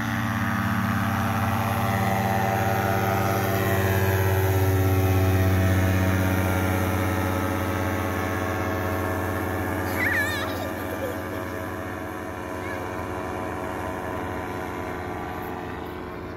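Fresh Breeze Monster 122 paramotor's engine and propeller running under power through the takeoff roll and climb-out. It is a steady drone that grows louder for the first five seconds or so and then slowly fades as the craft climbs away.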